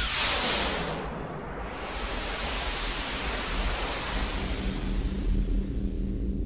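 Logo intro sound effect: a rushing noise, like surf or wind, that fades about a second in and then swells back, over a low steady drone.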